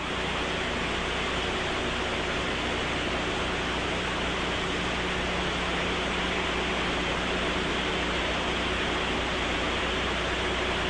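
Steady static hiss with a faint low hum from an open radio communications channel, cutting in suddenly at the start.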